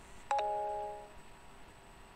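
A short two-note electronic chime, a ding-dong: two quick struck tones just under a second in, ringing out and fading within about a second.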